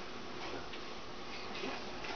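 Quiet indoor room tone: a steady low hiss with a couple of faint, brief ticks.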